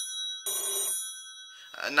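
A telephone ringing in short double rings: the end of one ring, then a second ring about half a second in, its tones dying away within a second.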